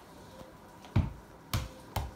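A large play ball bouncing on a hard floor: a loud thud about a second in, then two quicker, lighter bounces.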